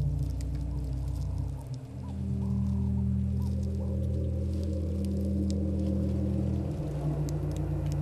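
Low, sustained musical drone of layered tones that shifts to a new chord about two seconds in and again near the end, with faint scattered ticks and crackles above it.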